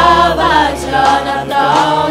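Church choir singing a gospel song in several voices over a held low bass note.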